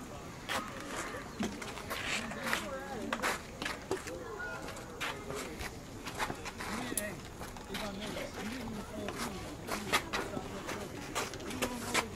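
Distant voices of players and coaches calling out across an open ball field, with scattered sharp clicks and knocks at irregular moments.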